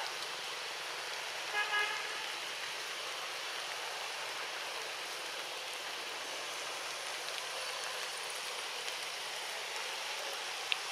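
Steady outdoor background hiss. About one and a half seconds in, a distant horn toots twice briefly.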